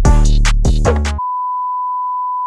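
Electronic intro music with a heavy beat that stops just over a second in. A steady, high-pitched test-pattern beep takes over and holds unbroken: the reference tone that goes with TV color bars.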